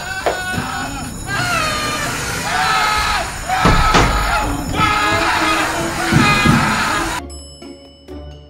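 A man screaming in high, wavering cries over background music. The sound cuts off abruptly about seven seconds in.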